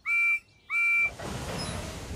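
Steam locomotive whistle giving two short toots, each a steady high note about a third of a second long with a short gap between. After the toots a steady low rumbling hiss sets in.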